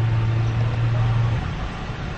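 Steady low hum over the background noise inside a car idling at a standstill; the hum stops about a second and a half in.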